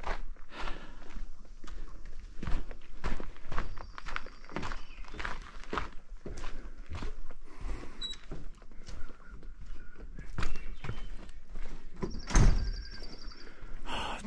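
A hiker's footsteps on a wooden boardwalk and hard ground, an irregular run of dull thuds.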